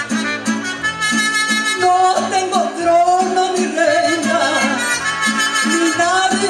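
Live mariachi band playing: violins and trumpet over a steady strummed guitar and bass rhythm.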